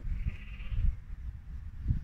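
A sheep bleats briefly in the first second, close by, over a low rumble on the microphone.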